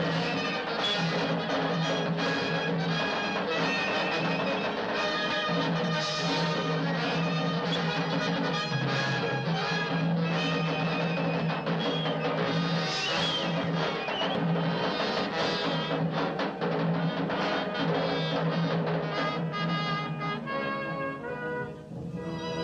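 Orchestral score with brass and drums playing loudly and steadily, thinning out near the end.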